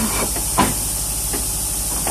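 Steady hiss and low hum of a blowing machine pushing polystyrene insulation beads through a feeder hose into a double-brick wall cavity, with one sharp knock a little over half a second in.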